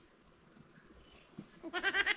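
Near silence, then near the end a short, quavering pitched call starts, made of quick pulses.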